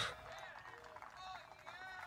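Faint outdoor ambience with a few faint, high sliding calls.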